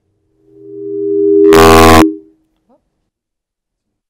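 A steady electronic tone swells in over about a second, then a very loud burst of harsh noise lasts about half a second and cuts off abruptly, as the documentary clip's audio starts playing back.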